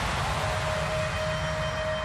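The fading tail of a stage sound-effect hit, a rumble with hiss, while a single steady held note of the backing track comes in about half a second in. This is the start of a slow song's intro.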